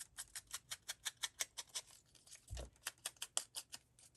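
Ink blending tool dabbed rapidly on an ink pad and onto a paper flower: a run of light, quick taps, about six a second. The tapping pauses a little past halfway, where there is one duller knock, then picks up again.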